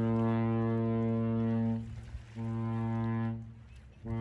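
Horn of the Great Lakes freighter Stewart J. Cort sounding a salute: a long, deep blast that cuts off about two seconds in, then a shorter blast after a brief gap.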